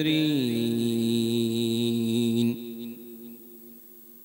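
Male reciter chanting Qur'anic recitation (tilawa) into a microphone: one long drawn-out note that dips in pitch and then holds steady, stopping about two and a half seconds in, with its echo fading away to a faint hum.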